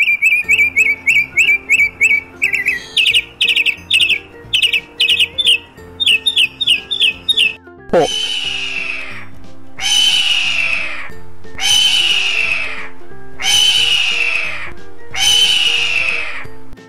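A mockingbird singing rapid, repeated high chirps for about seven seconds. Then, after the spoken word "hawk", a hawk screeches five times, each a long descending scream about two seconds apart. Soft background music runs under both.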